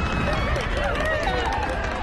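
Anime soundtrack with several voices shouting at once over a loud, dense, noisy background.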